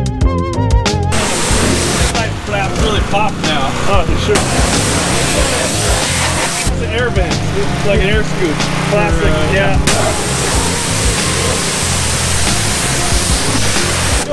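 Pressure washer spraying water onto a car body, a loud hiss that grows and fades in long stretches over a steady low hum. Background music with singing runs underneath.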